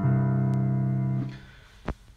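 A low chord on a Yamaha digital piano, held for just over a second and then released so that it fades out. A single short click follows near the end.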